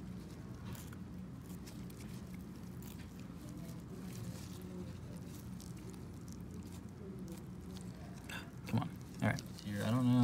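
Quiet room tone with a low steady hum and faint wet handling sounds from gloved hands and a scalpel working in preserved tissue; a few brief murmured voice sounds near the end.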